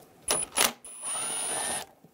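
Cordless 18-volt impact driver with a 10 mm socket backing out a screw: two short bursts, then about a second of steady motor whine that stops shortly before the end.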